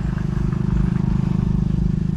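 A small engine running steadily, a loud, evenly pulsing low drone.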